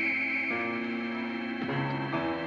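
Suspense film score: held, sustained chords that move to new notes about a quarter of the way in and again near the end.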